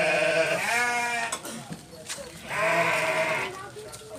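Garut sheep bleating: a long, loud bleat that trails off just after the start, a shorter bleat right after it, and another bleat lasting about a second, beginning about two and a half seconds in.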